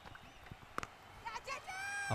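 A single sharp crack of a cricket bat striking the ball a little under a second in, over quiet open-ground ambience, followed near the end by the players' high-pitched shouts as the ball is played.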